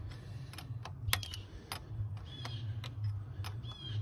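Irregular sharp metallic clicks and taps of a wrench working a brass air-line fitting onto the transmission's splitter port, with a couple of faint short squeaks.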